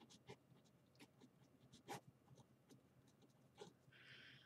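Faint pen strokes on paper while writing: short, irregular scratches, the loudest about two seconds in.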